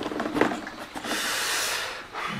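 A few light handling clicks, then a man's breathy exhale lasting just under a second.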